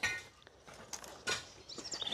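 A few faint clicks and light knocks from a home-made wooden-framed wire-mesh sand sieve and a tape measure being handled.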